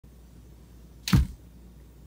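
A single slap of a hand coming down flat on a wooden workbench top, about a second in.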